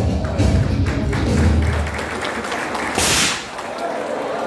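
Background music with a heavy bass beat, then about three seconds in a single short, loud blast of a confetti cannon firing.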